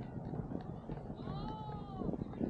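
A brief high-pitched squeal, arching slightly and falling, starting a little over a second in and lasting under a second, over background crowd chatter.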